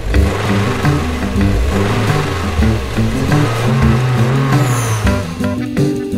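Sound effect of a car engine revving, layered with music, starting abruptly. About five seconds in it gives way to upbeat jazz music with a steady beat.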